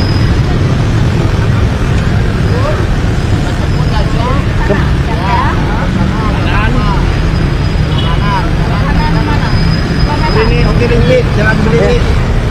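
Steady low rumble of motorbike and car traffic on a busy street. From about four seconds in, men's voices talk over it.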